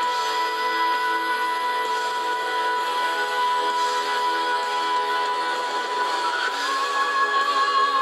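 A woman singing a ballad live over instrumental backing: she holds one long high note, then steps up to a slightly higher note with strong vibrato about six and a half seconds in.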